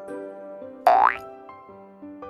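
Light children's background music, with a short cartoon sound effect about a second in: a sudden, loud glide rising quickly in pitch.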